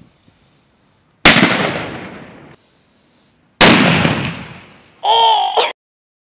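Two firecrackers exploding about two and a half seconds apart, each a sharp bang that rings out and fades over about a second. A short high shout follows near the end and cuts off suddenly.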